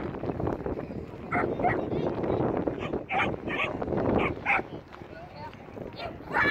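Dog barking in short, sharp barks, a couple about a second and a half in, then a quicker run of about five between three and four and a half seconds, over a murmur of voices and wind.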